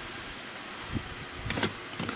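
Handling noise as a hand-held camera is moved: a few soft, low knocks and bumps about a second in and again just after the middle, over a steady background hiss.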